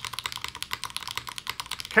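Fast typing on a Class 0413 custom mechanical keyboard built with HMX Jammy switches, its stock plate with plate foam and GMK keycaps, set on a desk pad: a quick, even run of bright keystroke clacks, a dozen or so a second.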